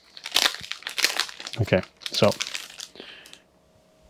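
Plastic shrink wrap on a deck of cards crinkling and crackling as it is handled. It dies away in the last second.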